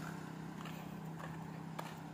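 Faint footsteps on a paved road, about one every half second or so, over a steady low hum of a distant motor vehicle engine.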